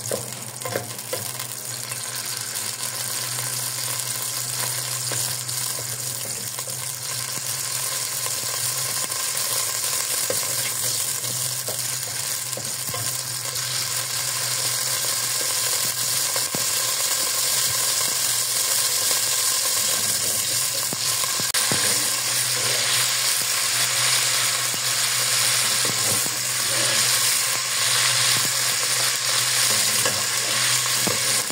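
Almonds and raisins frying in oil in an aluminium pot: a steady sizzle that grows gradually louder, with a wooden spoon stirring and scraping against the pot.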